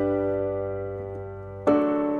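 A G major chord on the piano rings and slowly fades, then a D major chord is struck about a second and a half in.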